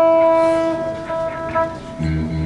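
Live instrumental rock: an electric guitar chord struck at the start and left to ring, fading slowly over nearly two seconds.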